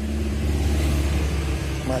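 A motor running with a steady low hum that swells slightly through the middle.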